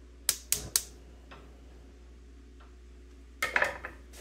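A fork tapped three quick times against cookware, then a short clatter near the end as the fork is laid down on a wooden cutting board.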